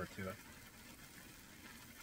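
Pancake batter cooking on a propane griddle: a faint, steady sizzle.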